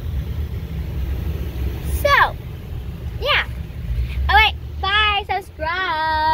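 Steady low road rumble inside a moving car's cabin, with a child's high-pitched wordless squeals breaking in five times from about two seconds in, the first two sliding down in pitch and the last one held.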